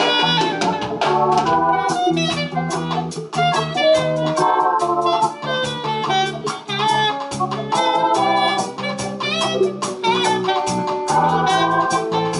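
Live band playing a reggae tune: drum kit keeping a steady beat under bass guitar and keyboard organ chords.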